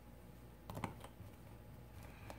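Small clicks and taps from a precision screwdriver and small phone parts being handled, with a cluster of sharp clicks a little under a second in and a few faint ticks after.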